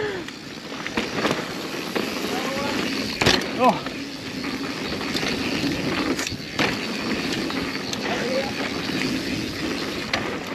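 Mountain bike rolling fast down a dirt trail: steady tyre and wind noise, with a few sharp knocks and rattles as the bike hits bumps and roots.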